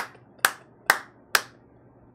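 Four sharp hand claps, evenly spaced about half a second apart.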